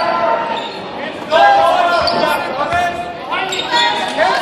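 Basketball game play in a large gym: a basketball bouncing on the hardwood court, a few low thumps around the middle, under players' and spectators' voices calling out.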